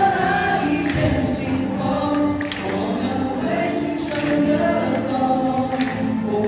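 A large group of voices singing a Mandarin pop song together, choir-style, in sustained sung phrases.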